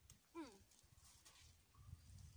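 Near silence: a woman's short hummed "hmm", falling in pitch, then only faint rustling and low rumble.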